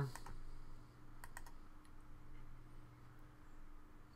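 A couple of faint, quick clicks at the computer about a second in, over a steady low electrical hum.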